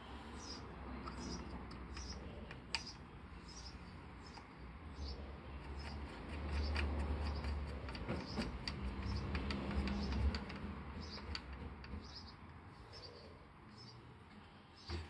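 Steel BBs being loaded into the Crosman 766 air rifle's BB reservoir: many small, irregular metallic clicks and ticks, thickest in the middle of the stretch, over a low rumble.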